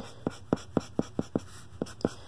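Felt-tip art marker that is running out of ink, scratching across paper in quick short strokes, about four a second.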